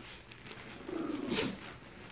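Chihuahua-type dogs play-wrestling, one giving a short growly grumble about a second in.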